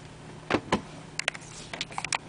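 Light clicks and taps of a plug being pulled and cables handled: two clicks about half a second in, then a quick run of clicks in the second half, over a faint low hum.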